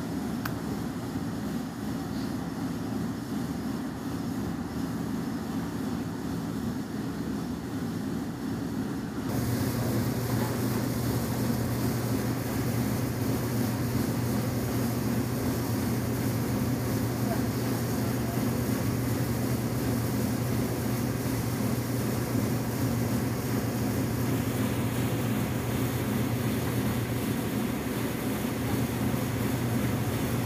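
Steady mechanical drone of running machinery. About nine seconds in it gets louder as a low hum and a wider rushing noise join it, and it stays that way.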